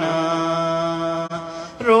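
A man's voice chanting a mourning lament (noha) alone, holding one long steady note for over a second, with a brief break before the next line starts near the end.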